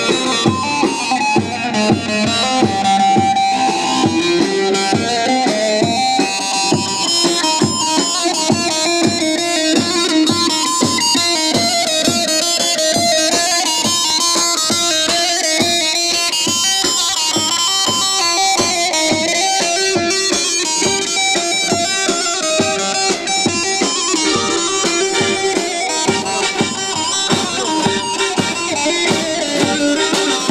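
Amplified live folk dance music from a saz band: plucked bağlama (saz) and electronic keyboard over a steady drum beat.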